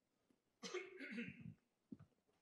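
A person coughs once, briefly, a little over half a second in, against near silence.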